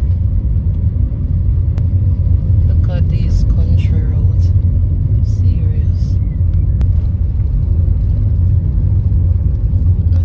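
Steady low rumble of a car being driven, heard from inside the cabin: engine and tyre road noise at a constant speed.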